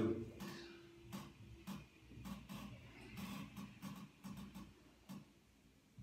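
Faint rustling with a scattered run of light, unevenly spaced clicks and creaks: hands pressing and working over the patient's clothing on a padded treatment table during soft-tissue work on the lower back.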